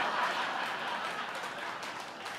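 Audience laughing and clapping in response to a joke, the sound slowly dying away.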